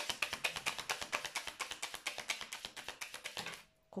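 A deck of Lenormand cards shuffled overhand by hand: a rapid, even patter of card clicks that stops about three and a half seconds in.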